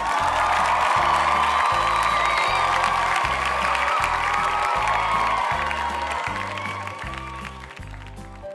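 Crowd applause and cheering added as a sound effect over background music with a steady beat. The applause starts suddenly, then fades out near the end.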